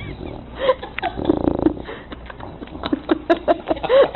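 An English bulldog dozing off gives a short, rough snore about a second in. Near the end a person laughs in quick short bursts.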